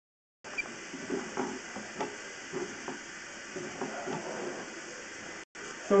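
Water running through a drain line during a sewer camera inspection: a faint, steady crackly hiss with scattered light knocks, broken briefly twice where the recording is cut.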